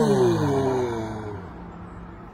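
An elderly man's long groan of effort as he is pulled up to standing from a seat, falling in pitch and fading away over about a second and a half.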